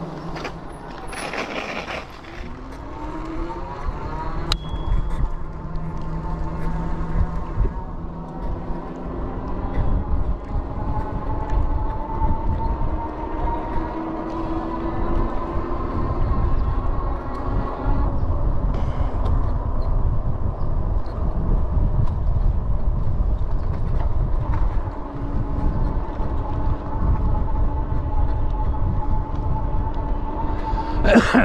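Electric bike motor whining while riding, its pitch rising and falling gently with speed, over heavy wind rumble on the microphone.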